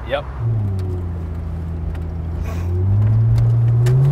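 Plymouth Prowler's 3.5-litre V6 running steadily at low revs, then revving up and getting louder about three seconds in as the car accelerates. It is heard from the open cockpit, with road and wind noise underneath.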